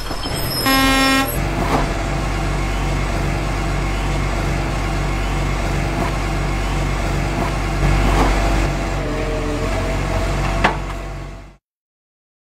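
A vehicle horn honks once, about a second in, over a steady running engine and road noise. A few short clicks and knocks come through the noise, the sharpest near the end, and the sound then fades out quickly.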